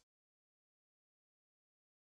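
Silence: the audio track is completely silent, with no room tone.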